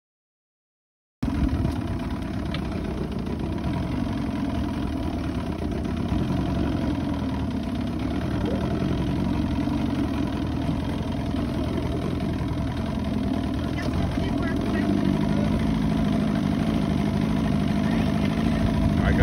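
Boat engine idling steadily, a low rumble with a constant engine note, cutting in about a second in after silence.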